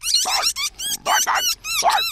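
Cartoon robot dog barking: a run of three or four warbling, electronic-sounding barks, each about half a second long.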